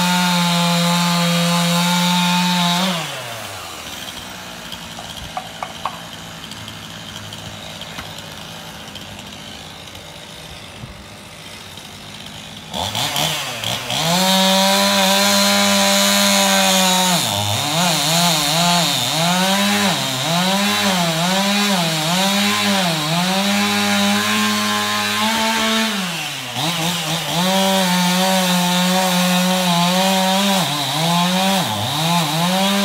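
Chainsaw cutting into a dead tree trunk during a felling cut: it runs at full throttle for about three seconds, drops to idle for about ten seconds, then revs back up and cuts again. Through the middle its pitch dips and recovers over and over as the chain bogs in the wood, before it runs steady and high near the end.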